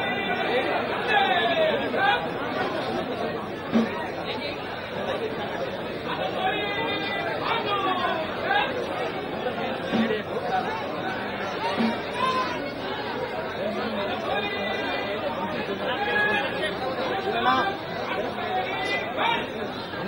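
Crowd chatter: many people talking over one another at once, with some raised voices calling out.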